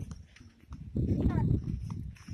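Footsteps and phone handling while walking, giving a few scattered knocks and low rumble. A short voice sound comes about a second in.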